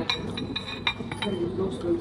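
Several light clinks of tableware, ceramic or glass, in the first second or so, each with a short ring.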